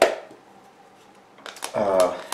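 A single sharp click, then a brief lull of faint room tone, then a couple of small clicks as a clear plastic piece is handled, with speech starting near the end.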